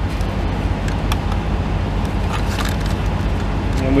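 Steady low drone of an idling vehicle engine, with a few light clicks and taps from hands working at the fan belts and tensioner.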